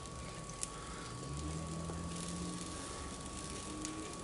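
Sweet potatoes and red beans sizzling faintly and steadily in a cast iron skillet, with a small click about half a second in.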